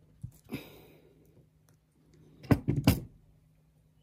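Hand crimping tool working a metal crimp onto fishing line: a faint click and rustle in the first second, then two sharp metallic knocks about half a second apart, the loudest sounds, past halfway.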